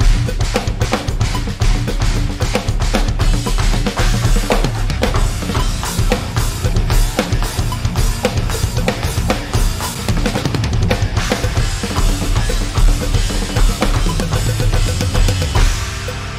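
Electronic drum kit played hard and fast, with rapid kick drum and snare strokes, along with a band's backing track.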